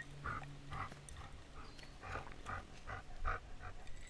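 A man gulping a drink from a glass, a steady run of soft swallows about two a second, heard close up through a clip-on mic.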